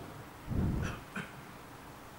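A short, faint vocal noise from a man close to the microphones, about half a second in, with a tiny tick just after; otherwise a lull in the speech.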